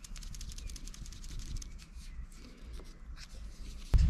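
Light, irregular clicking and rustling from hands handling a small neck knife and its kydex sheath on a cord, over a low rumble, busiest in the first two seconds. A sudden thump comes near the end.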